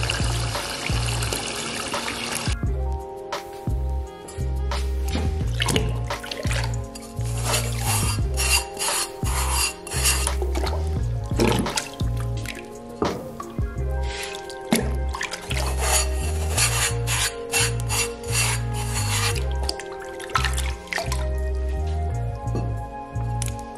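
A tap runs into a plastic bucket, cutting off about two and a half seconds in. Background music with a steady beat then plays over water splashing as a sponge is rubbed over an unglazed bisque pot.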